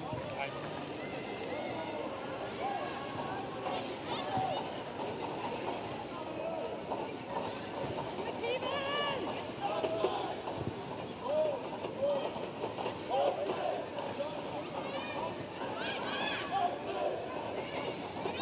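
Football stadium sound on a match broadcast: short shouted calls from players on the pitch over a steady background murmur, with many quick, sharp clicks from about three seconds on.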